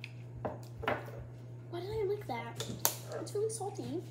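A few light knocks of a hot-sauce bottle and cups on a kitchen counter, the sharpest one nearly three seconds in. A wordless voice and a steady low hum run under them.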